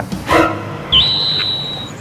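A single high whistle tone, about a second long, starting about a second in with a quick upward scoop and then held nearly steady until it stops shortly before the end.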